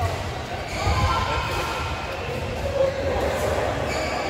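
Echoing indoor badminton hall in play: a few sharp racket hits and footfalls from several games on the court mats, over indistinct players' voices calling across the hall.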